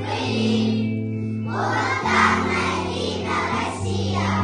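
Children's choir singing together over an instrumental accompaniment with long held low notes, the voices pausing briefly about a second in before the next phrase.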